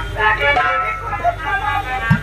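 Live stage accompaniment: a harmonium playing a melody of held, reedy notes, several sounding at once, over a steady low electrical hum from the PA.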